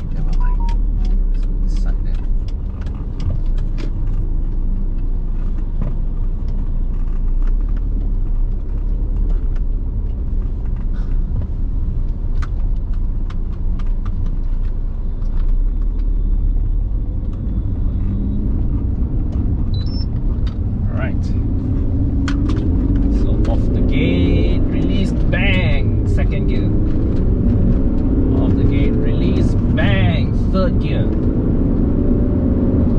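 Alfa 156 heard from inside the cabin while driving: a steady engine and road rumble. In the last third the engine note rises several times as the car accelerates through its automated manual gearbox's gears.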